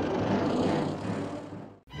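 Engine of an early open touring car running, a rough noisy rumble that fades and cuts off suddenly near the end.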